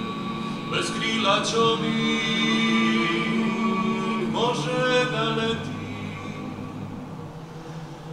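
Dalmatian klapa, a male a cappella vocal group, singing in close multi-part harmony with long held chords. New phrases enter about a second in and again around four and a half seconds, and the singing grows quieter toward the end.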